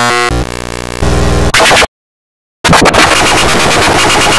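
Loud, harshly distorted and glitched audio effects: buzzy stacked tones that change abruptly, a cut to silence for under a second about two seconds in, then a return of dense harsh noise.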